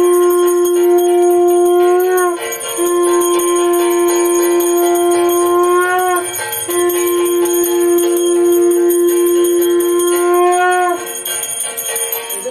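Conch shell (shankha) blown three times, each blow one steady note lasting about four seconds that bends upward as it ends. A bell rings steadily behind it.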